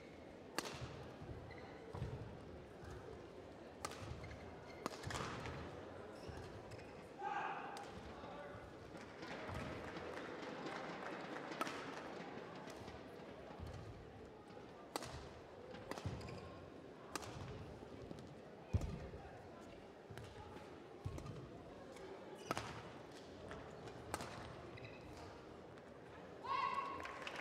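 Badminton rally: sharp cracks of rackets striking the shuttlecock every second or two, with duller thuds of players' footfalls on the court between them.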